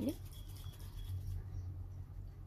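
Faint rubbing of palms rolling a small piece of modelling clay, over a steady low hum.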